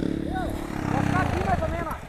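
Yamaha Lander trail motorcycle's single-cylinder engine running at low revs, with distant voices over it.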